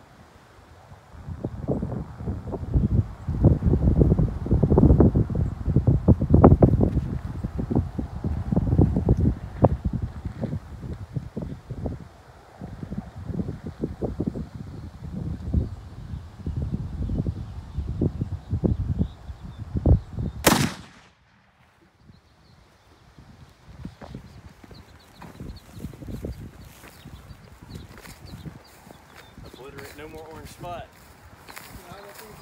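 Low, uneven rumble of wind noise on the microphone for most of the time, then a single .270 rifle shot about two-thirds of the way in, cut off sharply just after it.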